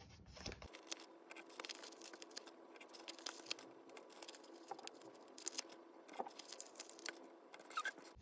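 Plastic zipper pouch crinkling and sticker letters being peeled and rubbed on by hand, with scattered small clicks and crackles.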